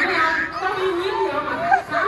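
Children chattering, several voices talking over one another.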